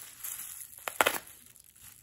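Plastic bubble wrap rustling as a wrapped knife package is handled, with two sharp clicks close together about a second in.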